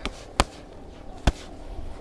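Boxing gloves punching focus mitts: a light hit at the very start, then two sharp smacks just under a second apart.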